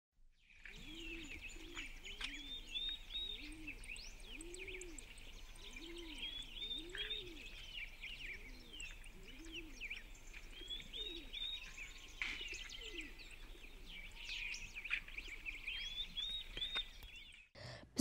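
Soft ambience of small birds chirping and twittering, over a low cooing call repeated about once a second. It stops shortly before the end.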